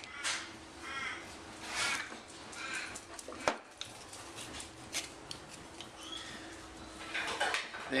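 A bird calls about four times over the first three seconds. A single sharp knock comes about three and a half seconds in, followed by light clicks of steel hand tools, a hammer and centre punch, being picked up and handled over the trunk lid.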